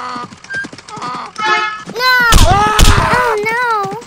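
Cartoon sound effects: clip-clopping hooves and a short whinny, then from about halfway a loud, wavering cry broken by two heavy thumps, the cry wavering on to the end.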